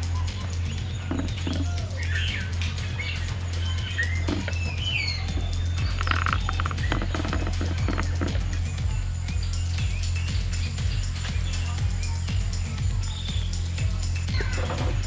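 Background music with a steady low bass line and a dense, even beat, with birds chirping over it in the first half.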